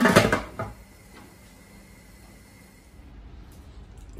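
Aluminium lid being set onto a large aluminium stockpot: a few metal clanks in the first half-second or so, then only a quiet, steady background.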